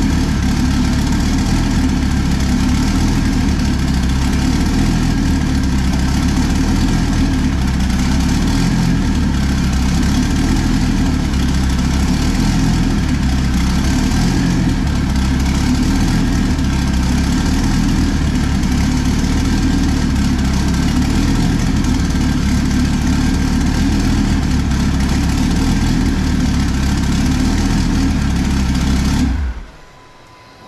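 Twin-turbo Dodge Viper V10 idling steadily, then cutting off suddenly near the end.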